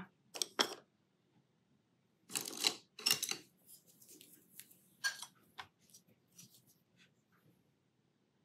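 Art supplies being handled: two light clicks, then two short rattling rustles about two and a half and three seconds in, followed by scattered faint taps that die away.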